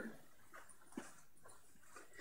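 Near silence: faint room tone, with one faint short click about a second in.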